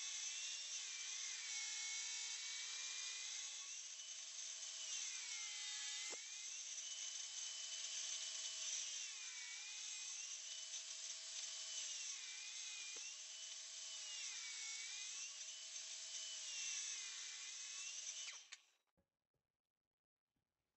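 Table saw resawing a thick hardwood board on edge, the motor's whine dipping in pitch over and over as the blade loads in the cut and then recovering. The sound cuts off suddenly near the end.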